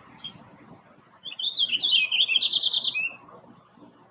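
Male purple finch singing one rich, fast warble of about two seconds that ends in a quick run of repeated notes, after a single short high chirp near the start.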